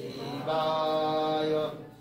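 A voice chanting a Shiva mantra, holding one long steady syllable from about half a second in and fading out near the end.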